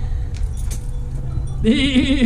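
A small goat bleating once, a wavering call that starts near the end, over a steady low rumble.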